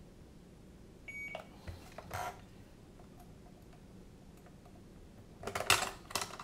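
A short electronic beep about a second in, then light plastic clicks from handling the FrSky X9 Lite radio transmitter. Near the end comes a louder clatter of knocks as the radio's battery compartment is opened and a cylindrical battery cell is taken out.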